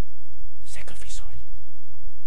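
A man whispering a short phrase into a microphone about a second in, over a steady low hum.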